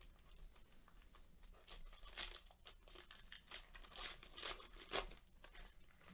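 Foil trading-card pack wrapper being torn open and crinkled by hand: a quick run of crackling rips, loudest at about two seconds and again about five seconds in.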